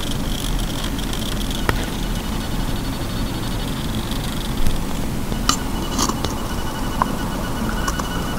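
Rokinon 50mm f/1.4 AF lens's autofocus motor working close to a lavalier mic: a faint high whine that shifts pitch partway through, with a few sharp clicks, over steady hiss. The focus drive is noisy enough to be recorded in video.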